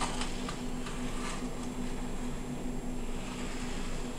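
NAO humanoid robot's joint motors whirring with faint small clicks as it rises from a crouch to standing, over a steady low hum.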